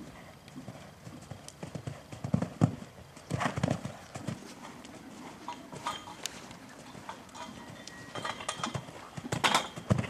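Hoofbeats of a ridden horse moving over a soft, chipped arena surface, coming as uneven clusters of dull thuds, loudest about two and a half seconds in, again about a second later, and near the end.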